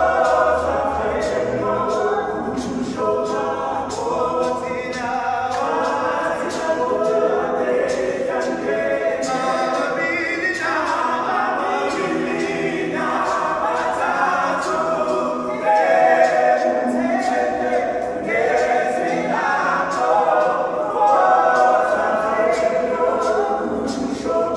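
A group of men singing a cappella in harmony into microphones, with regular sharp beats marking the rhythm.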